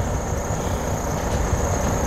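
Steady low rumble of outdoor background noise, with a constant faint high-pitched whine above it.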